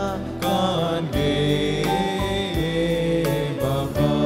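A church hymn sung in long held notes over instrumental accompaniment.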